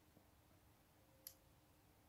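Near silence: room tone, with one faint, short click a little over a second in.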